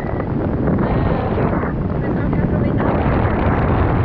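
Wind of the paraglider's flight buffeting the camera's microphone in a loud, steady rush, with faint voices coming through it at times.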